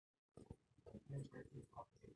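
A dog licking out a cooking pot: faint, irregular wet licks, starting about a third of a second in.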